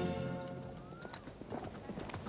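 The tail of an orchestral and operatic passage fading out, then horse hooves clip-clopping, irregular and getting busier from about a second in.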